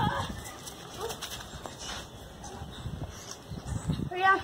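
A short cry right at the start, then a lower stretch of faint low thumps and scuffling.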